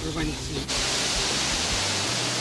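A brief voice, then a steady, even hiss that sets in abruptly under a second in and holds without change.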